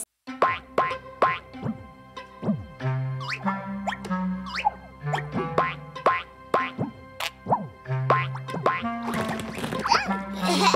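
Playful children's cartoon music with held bass notes, under a quick run of sliding cartoon 'boing' sound effects.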